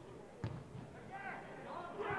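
A football kicked once, a single sharp thud about half a second in, followed by shouts from players and a small stadium crowd.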